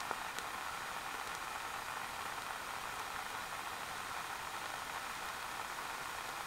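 Two cups of water in a metal pot heated by a burning Esbit solid-fuel tablet, hissing steadily as it nears the boil at about 210°F.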